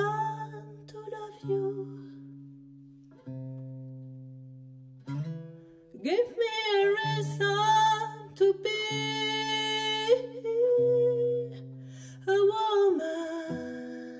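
A woman singing long held notes over an acoustic guitar playing slow, sustained chords. For a few seconds between phrases the guitar plays alone. About six seconds in, the voice returns with a long high line.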